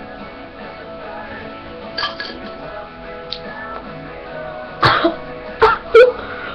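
Background music playing steadily, with a person coughing and spluttering twice near the end, short and loud, in reaction to a teaspoon of hot English mustard.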